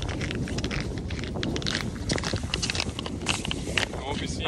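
Wind rumbling on the microphone, with scattered crisp crunches of boots on snow-covered ice.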